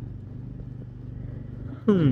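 A steady low mechanical hum, with a voice breaking in at a falling pitch near the end.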